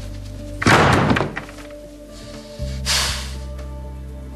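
Soft dramatic background music with sustained low chords that shift about two and a half seconds in. A door shuts with a thud about two-thirds of a second in. A second, softer noise follows at about three seconds.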